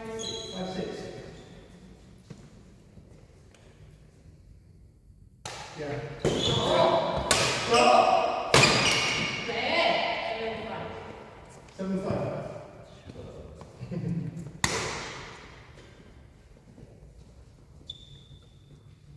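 Badminton play in a sports hall: several sharp racket hits on the shuttlecock, the first about five seconds in and the last near fifteen seconds. Between about six and eleven seconds, people's voices come in loudly with the hits, echoing in the large hall.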